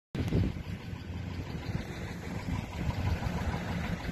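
Road and engine noise of a moving car heard from inside the cabin, a steady low rumble.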